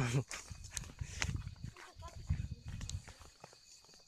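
Footsteps on a dirt path, uneven scuffs and low rumbles from a hand-held phone's microphone as the walker moves, with a few sharp clicks.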